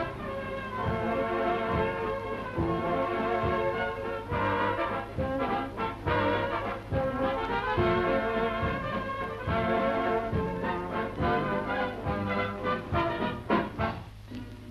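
Orchestra playing a Viennese waltz, with brass instruments prominent and a steady beat in the bass.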